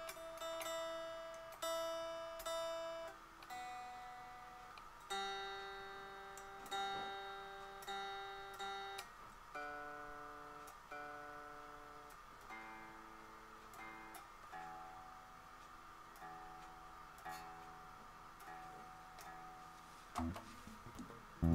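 Lyon by Washburn HSS electric guitar being tuned: single strings plucked one at a time, each note left to ring and fade, one every second or two. The pitch steps down from the high E string through the middle strings to the low E string.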